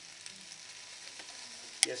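Chunks of vegetables frying in hot oil in a pan, a steady sizzle, with one sharp click near the end.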